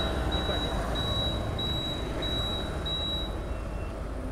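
Motorcycle engine running with road and traffic noise while riding, a steady low rumble. A thin, high steady tone comes and goes for about the first three seconds.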